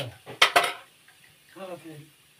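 Metal spoon clinking against a steel mesh strainer, a quick clatter of several hits about half a second in.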